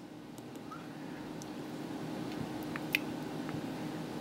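A low, steady room hum with a few faint, short clicks from fingers working two iPhone 4 handsets, the clearest about three seconds in.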